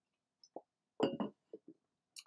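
A man's brief mouth noises in a pause between sentences: a small lip smack about half a second in, then a short voiced sound around one second in, with near silence around them.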